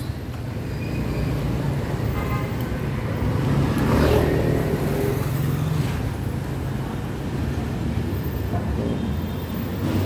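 City street traffic, mostly motorbike engines running with a steady low rumble; one vehicle passes closer and is loudest about four seconds in.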